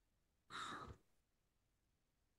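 A woman's short, faint intake of breath between spoken sentences, otherwise near silence.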